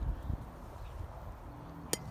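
A single sharp crack of a bat hitting a tossed baseball, near the end.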